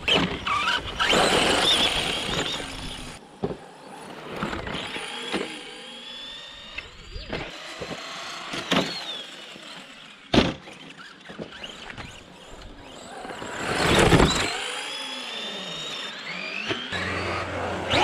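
Arrma Fury brushed electric RC short-course truck being driven hard: the motor whines up and down in pitch as the throttle is worked, over a scrabbling noise of tyres on grass and concrete. There is a sharp knock about ten seconds in, as the truck lands from a jump, and the loudest burst of motor and tyre noise comes a few seconds later.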